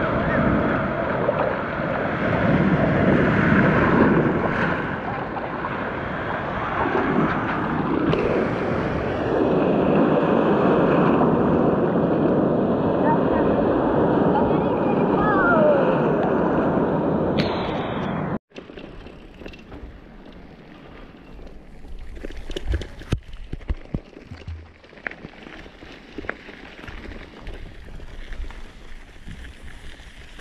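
Sea surf breaking and sloshing loudly around a swimmer, heard close up, until it cuts off suddenly about eighteen seconds in. A bicycle then rolls over a dirt trail, quieter, with scattered rattles and clicks.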